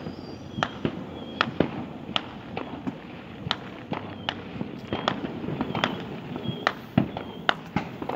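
Fireworks and firecrackers going off out of sight, a run of sharp irregular pops and bangs about two or three a second, some much louder than others.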